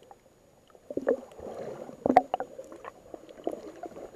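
Muffled underwater water noise picked up by a submerged camera: swishing and bubbling water with a few sharp knocks. It starts about a second in, and the loudest knock comes about two seconds in.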